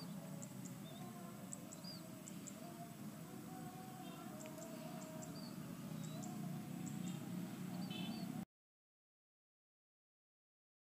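Faint background ambience: a low steady hum with a few short high chirps scattered through it. It cuts to dead silence suddenly, about eight and a half seconds in.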